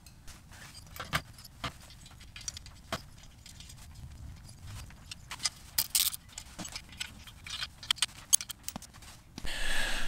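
Irregular light metallic clinks and taps from hand tools and a chrome moped exhaust pipe being handled while the exhaust is test-fitted to the frame.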